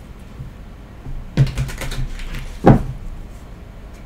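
A tarot card deck being shuffled by hand: a quick run of soft card clicks about a second in, then a single sharp knock a little later, the loudest sound.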